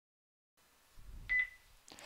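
A single short, high beep with a click at its start, about a second and a quarter in, over faint low background noise.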